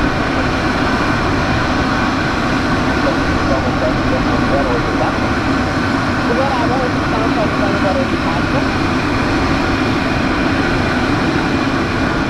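Steady jet turbine noise from a parked Gulfstream G550, a continuous rush with several held whining tones. People talk faintly over it.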